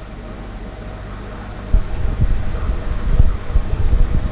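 Low rumbling and buffeting on the microphone over a steady low hum, growing louder and uneven about two seconds in.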